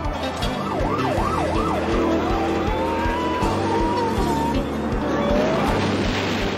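A police car siren sweeping quickly up and down, then a long, wavering squeal of skidding tyres, over background music with a steady drum beat.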